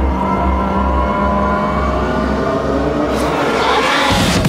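Drum and bass breakdown with no drums: pulsing deep bass under held, gritty synth tones, rising toward the drop near the end.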